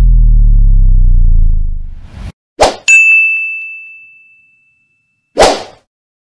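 Edited-in sound effects: a deep low tone with a slightly falling pitch fades out over the first two seconds. Then comes a whoosh, then a bright bell-like ding that rings out for nearly two seconds, and another whoosh near the end.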